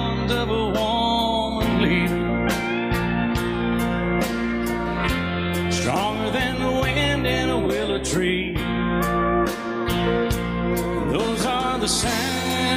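Instrumental country music: a steel guitar playing sliding, bending lines over guitar, bass and a steady drum beat.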